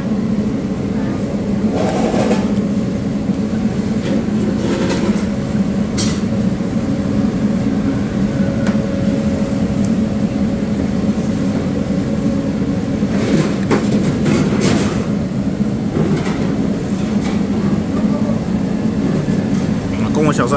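A steady low hum and rumble of background machinery or traffic, with a few short clatters about two seconds in, around five to six seconds, and again near the middle.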